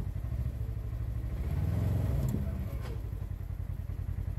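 Side-by-side UTV engine running steadily as it drives along a dirt trail, picking up a little about halfway through and easing off again, with a few light rattles.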